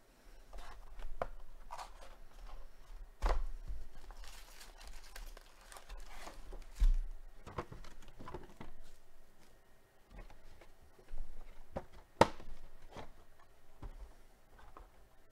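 A cardboard trading-card hobby box being opened and its foil card packs handled: rustling and crinkling of the pack wrappers, broken by a few sharp knocks, the loudest about three seconds in and again near the end.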